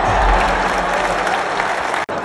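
Large basketball-arena crowd applauding, a dense, steady clatter of clapping that eases slightly toward the end.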